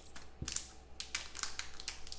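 A glossy black plastic pack wrapper being handled and opened, crinkling with a run of small irregular clicks and crackles.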